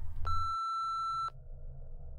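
A single electronic beep, one steady tone held for about a second before cutting off sharply, marking the end of a recorded log entry. A low hum continues underneath.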